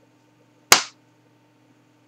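A single sharp knock from an upturned aluminium can of Murphy's Irish Stout, held over a full pint glass as the last of the beer is drained, dying away quickly.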